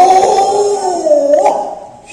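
A single Kecak performer's voice holding one long, loud, sung cry that wavers in pitch, dips about a second in, and dies away just before the end.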